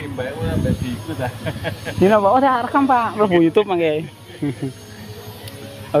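A person's voice talking for about the first four seconds, then quieter outdoor background. A brief low rumble about half a second in.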